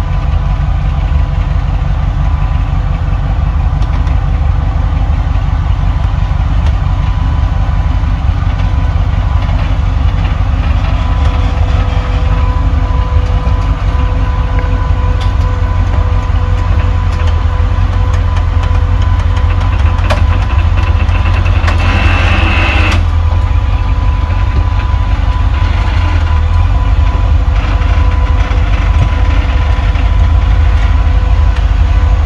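Rock crawler buggy's engine running at low speed as it creeps over boulders, a steady deep rumble. About two-thirds of the way through, a harsher burst lasts about a second.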